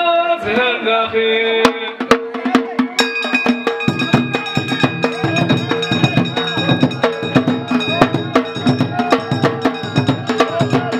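A man's amplified voice ends about a second in, then hand-struck frame drums (bendir) start up, going from a few scattered strikes to a dense, fast rhythm about four seconds in. High, steady ringing tones sit above the drumming.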